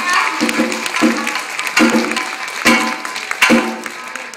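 Tsugaru shamisen played live: plucked notes punctuated by sharp percussive strikes a little under a second apart.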